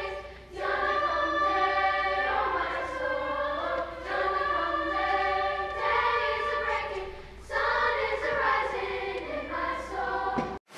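Mixed youth choir singing in long held phrases, with brief pauses between phrases about half a second in, near four seconds and around seven and a half seconds.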